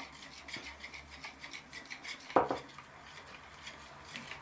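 Wire whisk beating eggs in a plastic bowl: quick, repeated scraping and ticking of the wires against the bowl, with one louder knock a little past halfway.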